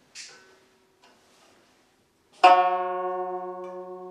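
Guzheng (Chinese plucked zither) opening its piece: after a brief soft noise and a pause, several strings are plucked together about halfway through and ring on, slowly fading.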